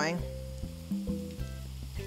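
Pancake batter deep-frying in hot canola oil with a faint, steady sizzle, under background music with a bass line.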